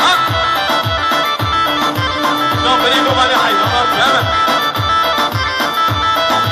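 Loud Kurdish wedding dance music: a reedy, bagpipe-like wind melody over a steady drum beat of about two to three beats a second.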